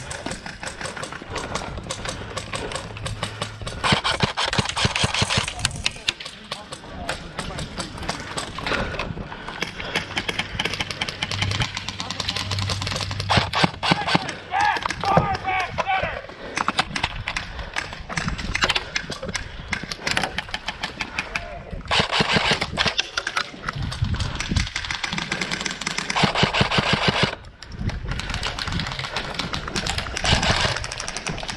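Airsoft guns firing in rapid full-auto bursts: a fast rattle of shots that starts and stops repeatedly, with several louder bursts among quieter ones.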